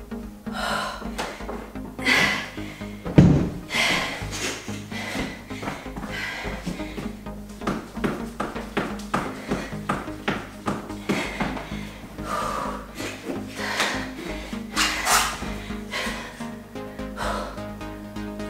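Background workout music playing, with heavy, effortful breathing from a person exercising and a single thump about three seconds in.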